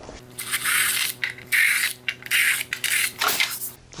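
Cordless drill running at a steady speed while its bit cuts a few holes in quick succession through the melamine-faced board, each cut a separate stretch of hiss over the motor's whine. The drill stops just before the end.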